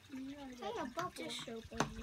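A spoon stirring soapy dish-soap bubble solution in a bowl, with two sharp clicks of the spoon against the bowl, about a second in and near the end, under low untranscribed children's voices.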